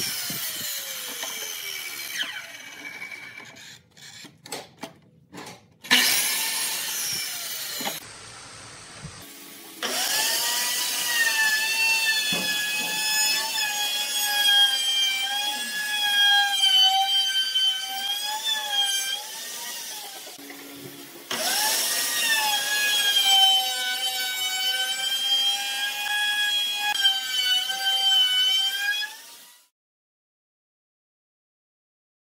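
A DongCheng handheld electric router runs at high speed, its whine wavering in pitch as the bit cuts along the edge of a wooden board. It runs in two long passes with a short break between them. Before that, a miter saw winds down after a cut, falling in pitch, followed by a few short bursts of sawing.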